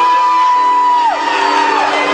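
A high whooping voice holds one note for about a second, sliding up into it and dropping away, over a sustained chord from a live rock band.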